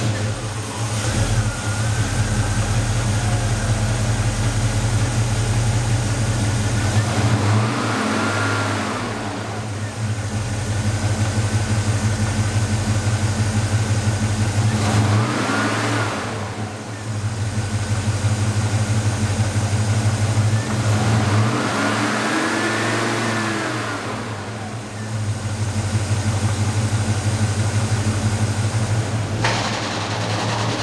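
A 1969 Chevrolet Chevelle Malibu's carbureted V8 idling steadily. The throttle is blipped three times, each rev climbing and falling back to idle.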